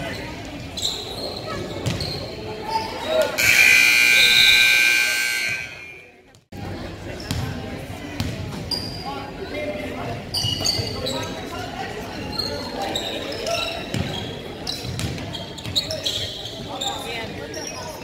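A gym scoreboard buzzer sounds loudly for about two and a half seconds a few seconds in. After a brief dropout, a basketball bounces on a hardwood court with sneakers squeaking, in an echoing gym.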